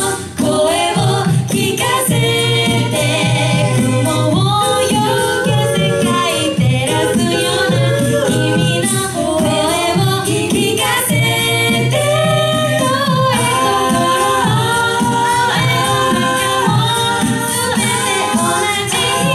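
A cappella group of mixed male and female voices singing in harmony through handheld microphones, over a steady rhythmic pulse in the low end.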